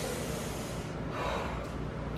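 A person blowing out a long breath through the mouth: a breathy rush of about a second, then a fainter one.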